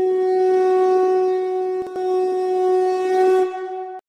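A conch shell (shankh) blown in one long, steady note that eases off shortly before the end.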